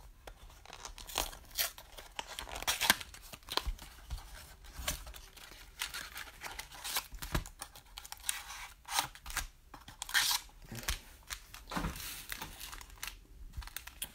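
A hobby box of 2019 Panini Prizm Mosaic basketball cards being torn open and its foil packs handled: irregular sharp tearing and rustling noises, the loudest about three seconds in and again about ten seconds in.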